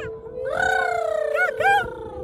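A person's voice giving one long, wavering wordless call, then two short rising-and-falling calls near the end.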